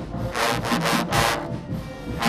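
A marching band trombone section playing loud, accented brassy notes, about three sharp blasts in quick succession.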